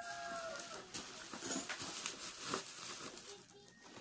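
A rooster's crow trailing off about half a second in, followed by the rustle and crinkle of plastic bubble-wrap packaging being handled.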